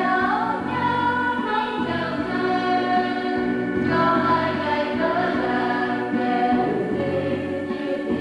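A choir of young women singing a church hymn together, with long held notes.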